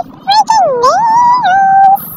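A high-pitched vocal sound on the soundtrack: a short note, then one long note that swoops down and climbs back up before holding steady.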